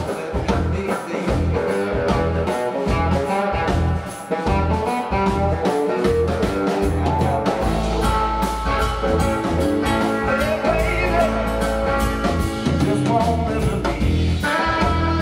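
Live blues-rock trio playing: electric guitar on a hollow-body archtop, bass guitar and drum kit, with a man singing over a steady drum beat.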